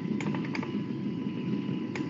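Open voice-chat microphone picking up steady background noise, with a few faint clicks near the start and near the end.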